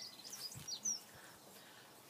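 Wild birds chirping faintly: a few short, high chirps in the first second over a faint outdoor background.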